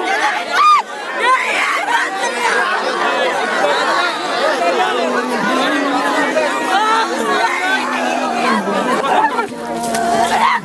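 A crowd of mourners with many voices overlapping: weeping, wailing and calling out all at once. A loud, high cry sounds about a second in.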